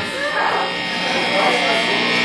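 Steady electrical buzz and hum from the band's amplifiers idling between songs, with indistinct voices over it.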